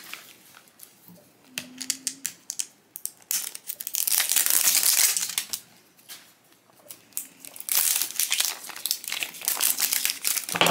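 Plastic wrapper of a blind-box toy capsule ball crinkling as it is handled and peeled off: scattered crackles at first, then two spells of dense crinkling, the second running into the end.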